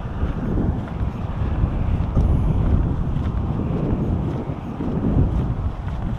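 Wind buffeting the camera microphone while it moves, a steady low rumble with hiss.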